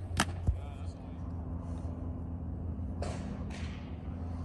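A baseball pitch being delivered and met: a single sharp crack shortly after the start, then a dull thud, over a steady low hum.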